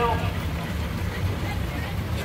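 Miniature steam roller driving slowly past close by, giving a steady low rumble.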